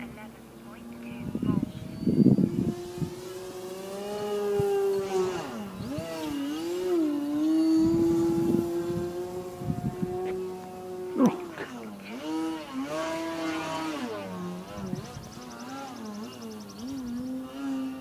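A radio-controlled Slick 540 aerobatic plane's motor and propeller running overhead: a steady droning tone whose pitch drops and climbs back several times as the throttle is cut and opened through manoeuvres.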